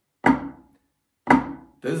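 Two flams played with wooden drumsticks on a practice pad, about a second apart, each a quiet grace note from the low stick just ahead of a loud stroke from the raised stick.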